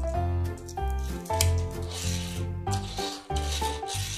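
Background music with a bass line. Twice, about halfway in and again near the end, a rough rubbing noise from a small plastic toy car's wheels running across the tabletop.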